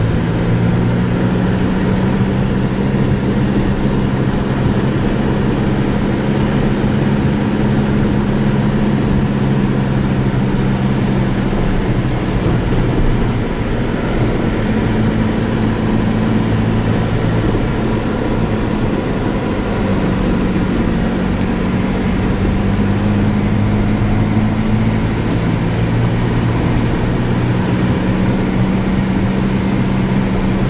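A road vehicle's engine running steadily with road noise, heard from inside the cabin while driving. The low engine hum shifts pitch a few times as the engine changes speed, dipping about twelve seconds in and again near twenty seconds.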